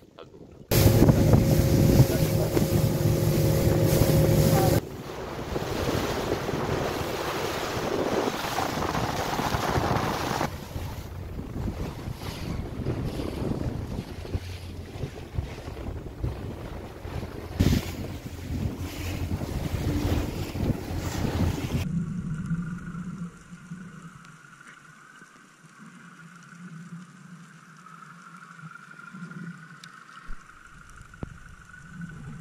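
Outboard motor of a rigid inflatable boat running at speed over a choppy sea, with heavy wind on the microphone and rushing water. About three-quarters of the way through it gives way to a quieter, muffled underwater hum.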